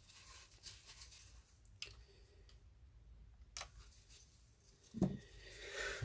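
Quiet room tone with a few faint, short clicks, then a man's voice starts to say "all right" near the end.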